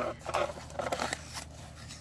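Crinkle-cut shredded paper filler rustling and small paperboard boxes scraping against each other as hands rummage through a packed shipping box; the crackling is busiest in the first second and thins out after.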